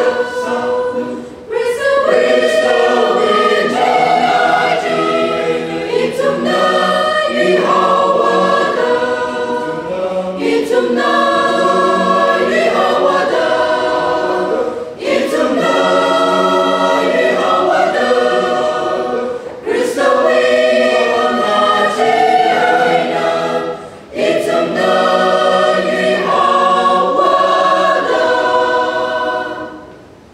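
Mixed choir of women's and men's voices singing in harmony, in long phrases with brief breaks between them and a pause at the end.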